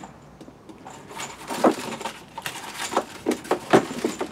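Hands rummaging through a battery charger kit's packaging and small parts. Starting about a second in, there is a string of about a dozen sharp clicks, knocks and light rattles.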